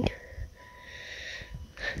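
A car's electronic warning beeper sounding as a faint, steady high tone, with a soft breath close to the microphone through the middle of it.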